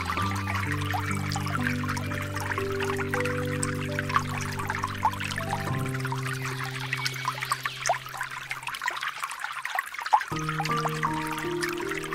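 Slow ambient music of held, sustained chords over steady trickling water. The chords die away about nine seconds in, leaving only the water for a moment, and a new chord enters just after ten seconds.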